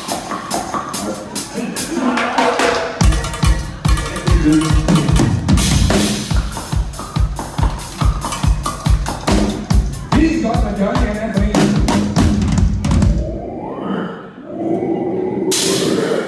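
A dansband playing live, a steady drum-kit beat under singing and band. The beat stops about 13 seconds in, a held note glides up, and a single loud full-band hit lands just before the end.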